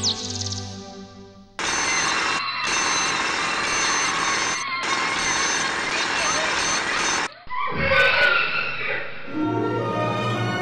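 An alarm clock ringing loudly for about six seconds, cut off briefly twice. Soon after it stops comes a louder burst of a different sound, and music comes back near the end.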